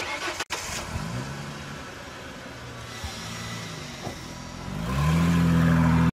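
Car engine revving. Its pitch climbs about a second in and holds, then it revs up again and gets louder near the end.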